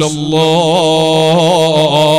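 A man's voice chanting one long held melodic line, with small quavering turns in pitch, in the manner of Islamic religious recitation.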